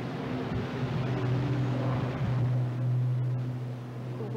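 A low, steady engine drone, swelling to its loudest about two to three seconds in and easing toward the end.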